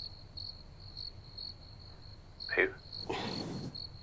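Crickets chirping steadily in the background, a few short high chirps a second.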